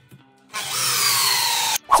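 Power drill driving a long wood screw into a block of wood: a loud whir lasting just over a second, its pitch slowly falling as the motor slows under load, then cutting off suddenly.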